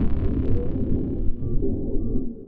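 Low, rumbling cinematic drone from an intro sting's sound design, with a few held tones over it.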